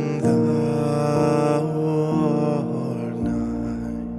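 Digital piano playing slow hymn chords that change about once a second, with a man's sung note held over the first part.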